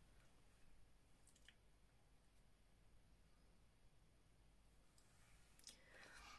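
Near silence: room tone with a few faint small clicks, a couple about a second in and a few more near the end.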